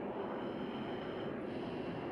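Harrier GR7's Rolls-Royce Pegasus turbofan running at high power in flight just after take-off: a steady rushing jet noise with a faint high whine.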